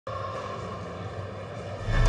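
Steady synthesized drone of a show's intro sound design, swelling in the low end near the end as it leads into the theme music.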